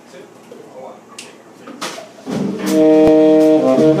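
Live jazz quartet starting a tune: after a couple of seconds of quiet room murmur and a few sharp clicks, tenor saxophone comes in with loud held notes over bass and drums.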